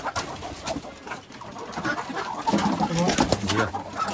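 A Muscovy duck being grabbed by hand among poultry: scuffling and short clattering knocks, with low cooing bird calls in the second half.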